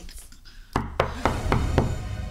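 Five quick knocks on a door, about four a second, starting a little under a second in, over low music.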